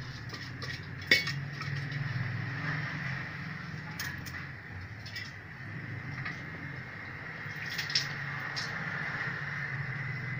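A metal cooking pot and utensils give a few sharp clinks over a steady low hum. The loudest clink comes about a second in, with more around the middle and near the end.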